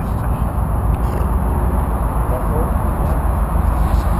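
Wind buffeting an outdoor microphone: a steady, uneven low rumble.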